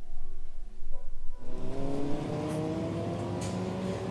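Soft background music, then about a second and a half in, a motor vehicle's engine accelerating with street noise, its pitch rising steadily, then starting to drop right at the end.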